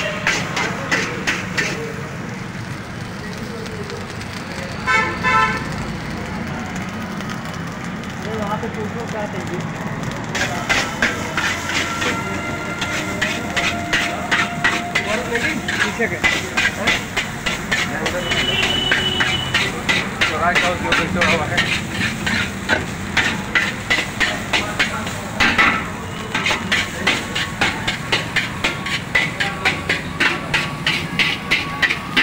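Metal ladle striking and scraping a steel wok as fried rice is stir-fried, a run of clanks about two to three a second, fewer for several seconds early on. A vehicle horn toots briefly about five seconds in.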